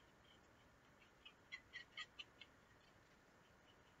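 Near silence: quiet room tone, with a short run of about six faint, high ticks a little over a second in.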